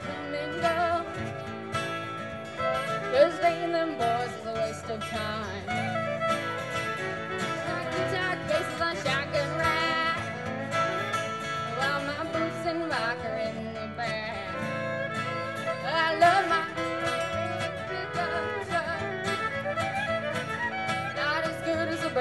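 Live country-bluegrass band playing an instrumental break: a fiddle carries a sliding melody over strummed acoustic guitars.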